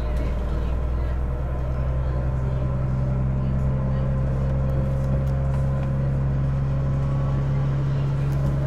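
Diesel engine of a KiHa 110 series railcar running under load as the train pulls out of a station, a steady low drone that strengthens slightly about three seconds in.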